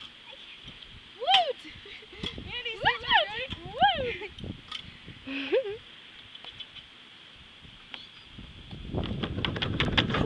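Girls' wordless high-pitched squeals and laughs: a few short cries that swoop up and down in pitch during the first half. Near the end a rushing noise builds up.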